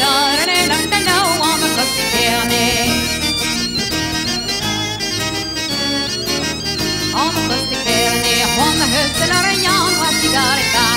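Breton pipe band (bagad) music: bombardes and bagpipes playing a gavotte tune over a steady drone, with drums.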